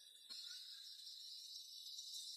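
Near silence: a faint steady high-pitched hiss, with a small click about a third of a second in.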